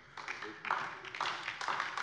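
Scattered hand-clapping applause from a group of listeners, with faint voices mixed in.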